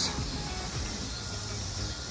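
Quiet background music over a steady low hiss of outdoor ambience.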